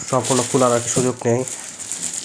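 A man speaking, with light rustling and rattling from the polystyrene foam packing and plastic bag being handled under his voice. The speech stops about one and a half seconds in.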